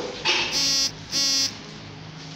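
A brief noise, then two short, steady electronic buzzer tones about a third of a second each, the second starting just over half a second after the first ends.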